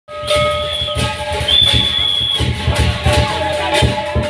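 Dragon dance percussion: drums beating in a quick rhythm with cymbals clashing. A high shrill tone is held twice, about a second each, in the first half.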